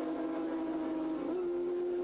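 Racing motorcycle engines running at high revs, a steady high note that rises slightly about halfway through.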